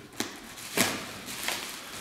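Plastic bag and bubble wrap rustling and crackling as tape is cut and pulled from the wrapping, in three short crackles, the loudest near the middle.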